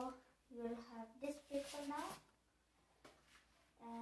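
A child talking for about two seconds, too unclear to make out, then a short lull with a few faint clicks, and the voice starts again near the end.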